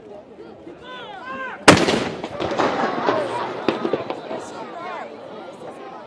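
A single shot from a towed howitzer firing a salute round about a second and a half in: one sharp, very loud boom that rolls away as an echo over the next couple of seconds. Spectators' voices are heard before and after it.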